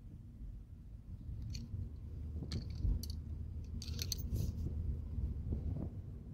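Car cabin noise while driving: a low road and engine rumble that grows louder over the first couple of seconds, with a few brief clicks and rattles scattered through it.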